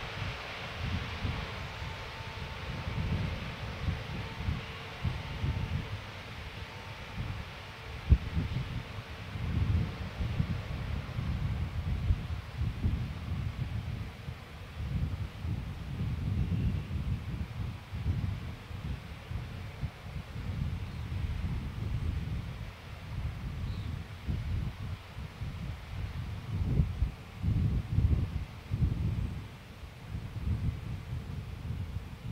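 Gusty wind buffeting an outdoor microphone, a low rumble that rises and falls unevenly, with a single sharp click about eight seconds in.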